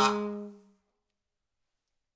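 The last held chord of a small wind ensemble (saxophones and other reeds) playing several sustained notes together, dying away within about the first second.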